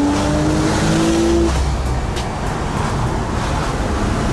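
Car engine accelerating, its note rising steadily, then dropping away suddenly about a second and a half in, leaving a low rumble and road noise.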